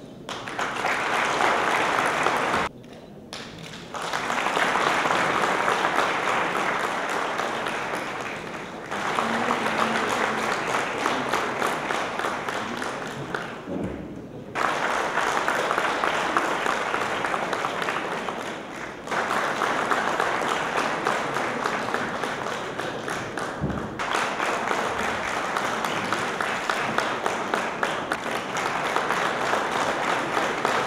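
Audience applauding in several rounds of a few seconds each, with short lulls between them.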